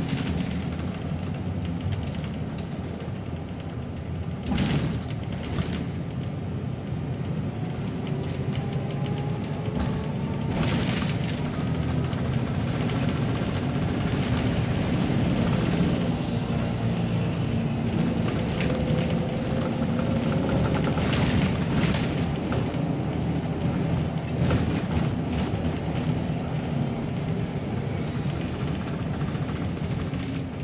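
Interior of a moving city bus: the engine runs under load with tyre and road noise, its pitch rising a couple of times as the bus picks up speed. Sharp knocks and rattles from the bodywork come a few times, near five, eleven and twenty-two seconds in.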